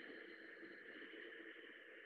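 A woman's long, soft exhale through the nose with the back of the throat narrowed: ujjayi "yoga breath", a steady breathy hiss.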